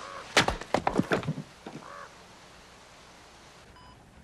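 A bird cawing twice, once at the start and again about two seconds in. Between the calls comes a quick run of loud thuds, about half a dozen knocks in under a second. A short electronic beep sounds near the end.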